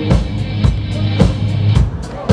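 Rock band playing live: electric guitars and bass guitar over a drum kit, with strong drum hits about twice a second.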